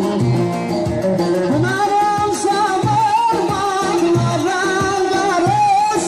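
A Turkish folk song (türkü) with a man singing a wavering, ornamented melody over instrumental accompaniment and a steady low beat. The voice comes in about a second and a half in.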